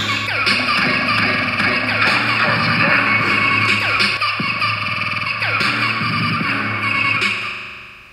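Electronic synthpop music from iPad synth apps: a drum-machine pattern of kick, tom and zap sounds over sustained synthesizer tones, with repeated falling pitch sweeps. The track begins fading out near the end.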